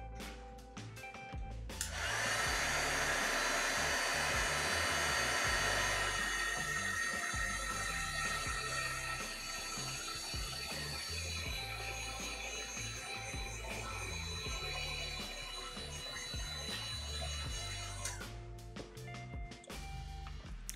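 Heat gun blowing hot air to shrink heat-shrink tubing onto a cable end. It switches on about two seconds in, runs as a steady rushing noise, and stops near the end.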